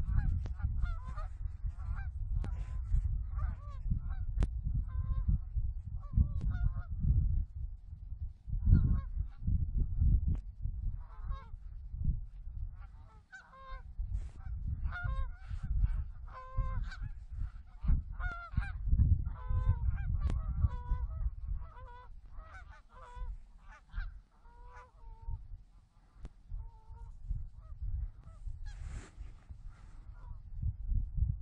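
Canada geese honking, many short calls one after another, coming thickest in the middle stretch, over a steady low rumble of wind on the microphone.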